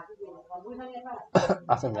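Speech: a voice talking, faint and low at first, then louder from a little past halfway with a sharp, noisy start.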